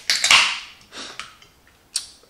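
Aluminium soda can being cracked open by its pull tab: a loud hiss of escaping carbonation lasting about half a second, then a couple of softer clicks about a second in.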